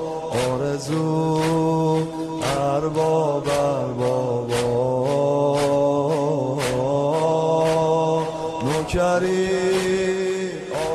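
A man chanting a devotional lament for Hussein in long held notes, over a steady beat of sharp strikes about twice a second.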